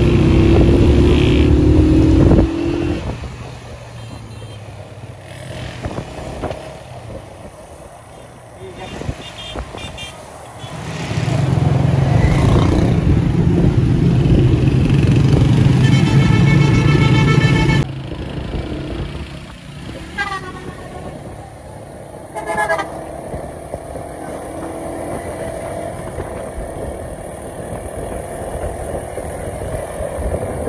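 Moving road traffic with a loud low rumble of engines and air rushing past, strongest at the start and for several seconds in the middle. Vehicle horns honk over it: a few short beeps, one longer horn blast, then two more brief toots.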